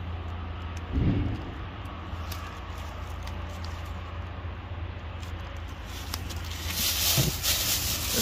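Light clicking and shuffling of a stack of paper trading cards handled in gloved hands, over a steady low rumble, with a short low sound about a second in. Near the end a thin plastic bag starts to rustle.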